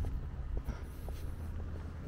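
Faint footsteps of someone walking, a soft click about every half second, over a low steady rumble.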